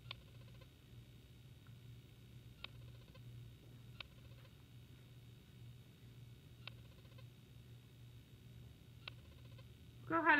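Near silence: a faint steady hum with five light clicks spread across it, a paintbrush knocking against the container of plaster-and-chalk-paint mix as she works.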